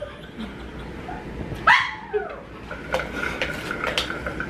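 A dog barks once, a short call a little under two seconds in.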